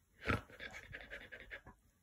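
A puppy panting in quick, faint short breaths, about ten a second, after one louder huff, its mouth on a person's foot.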